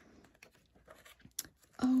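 A glossy page of a large book being turned by hand: soft paper rustling and sliding, with a short crisp flick of paper about a second and a half in.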